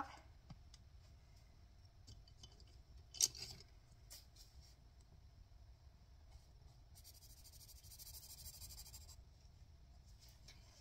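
Coloured pencil scribbling on paper for about two seconds near the end, colouring in a shape on a printed sheet. Earlier there are a few light clicks, the sharpest about three seconds in.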